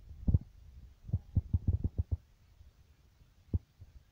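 A series of low, dull thumps: one just after the start, a quick run of about seven in the middle, and a single one near the end.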